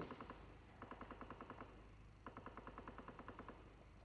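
Two faint bursts of automatic gunfire, each a rapid, even string of shots at about a dozen a second: a shorter burst about a second in, then a longer one from a little past the middle.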